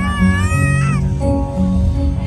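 Children's choir singing live over a low, steady accompaniment. A high, wavering note is held through the first second and slides down at its end.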